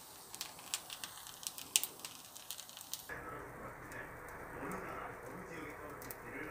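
Rice frying in a nonstick pan, crackling faintly with scattered sharp crackles as its bottom crisps. About halfway through the sound changes abruptly to a duller, muffled murmur.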